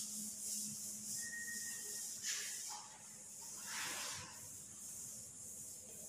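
Chalkboard duster wiping across a chalkboard in repeated strokes, a dry rubbing hiss with a few stronger sweeps.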